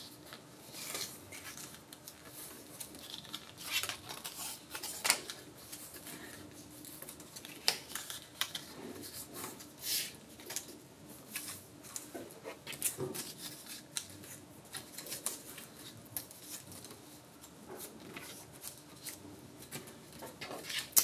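Faint handling sounds of thin card and double-sided high tack tape being pressed onto the tabs of a scored card frame and folded. They come as scattered small crackles and sharp ticks, irregular and spread throughout.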